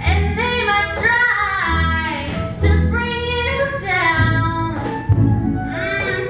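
A woman singing a song while strumming an acoustic guitar.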